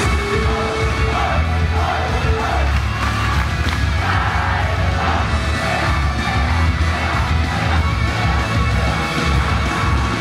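Pop music played loud over a concert sound system with a heavy bass beat, and an audience shouting and cheering along in time with it.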